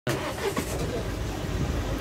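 Car engine running steadily, heard from inside the cabin as a low, even hum, with faint voices in the background.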